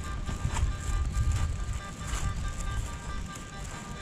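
Low, uneven rumble of wind and handling noise on the camera's microphone, under faint steady high tones.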